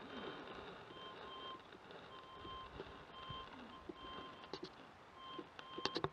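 Faint electronic beeper sounding a series of short, same-pitched beeps, roughly one or two a second, starting about a second in, over low road noise.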